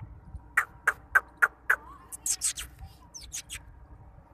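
A person making quick kissing squeaks to get a dog's attention, in three short runs of sharp chirps.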